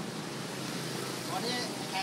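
Steady street traffic noise from passing vehicles, with a man speaking Thai near the end.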